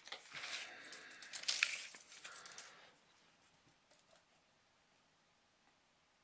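Rustling and scraping of a tape measure being pulled out and laid along a cloth surface, with a few sharp clicks. It stops about three seconds in.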